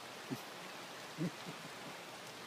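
Steady, even rush of a river running high after its flow more than doubled. Two brief soft voice sounds, about a third of a second and a second and a quarter in.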